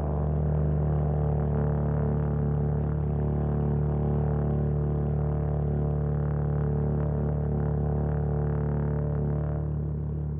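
Euphonium holding one long, low, steady drone note.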